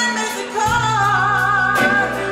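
A woman singing with a live band of keyboard, electric guitars, bass and drums: about halfway in she holds a long note with vibrato over a sustained bass note, and a drum hit lands near the end.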